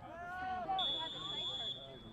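A referee's whistle blows one steady, high-pitched note for about a second, starting just after a voice shouts.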